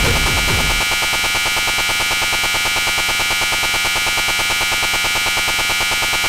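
Live industrial techno: the bass-heavy beat drops out about a second in, leaving a loud, harsh electronic buzzing drone that pulses rapidly and evenly.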